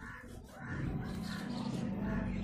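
A crow cawing several times, the calls about half a second apart, over a low steady hum that starts about half a second in.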